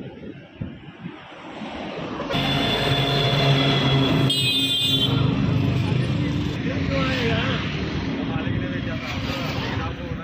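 A motor vehicle's engine running steadily, starting suddenly about two seconds in, with people talking over it later on.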